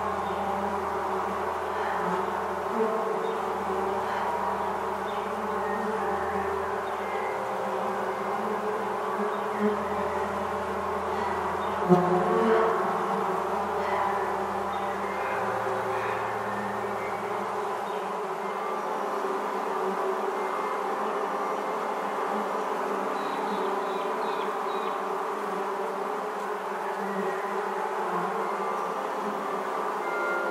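Dense steady hum of a honeybee swarm, used as an ambient music piece, with held tones above it and low sustained bass notes that change every few seconds and fall away about two-thirds through. A short louder sound stands out about twelve seconds in.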